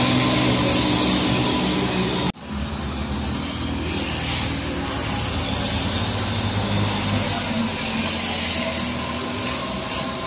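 Heavy trucks' diesel engines running as they pass close by. About two seconds in, the sound cuts off abruptly. It resumes with a Hino box truck's diesel engine running steadily as the truck approaches, puffing dark smoke.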